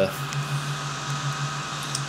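Steady low hum of a Mac computer's cooling fans running, with a few faint steady whining tones above it.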